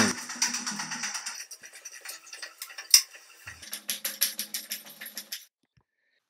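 Quick taps of footfalls on a wooden floor, with one sharper knock about three seconds in, then a denser run of taps that cuts off suddenly shortly before the end.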